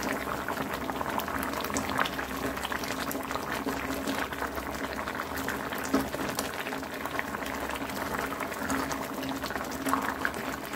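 Thick tomato gravy boiling in a pan, a continuous bubbling with many small pops and now and then a sharper pop, over a faint steady low hum.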